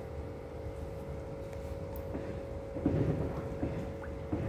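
Koi pond pump and filter running: a steady low rumble with a constant mechanical hum, and a short louder sound about three seconds in.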